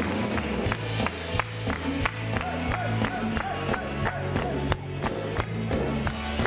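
A live band with trumpets, drums, bass and guitar plays an instrumental stretch of the song, without vocals, over a steady beat of about three drum strikes a second.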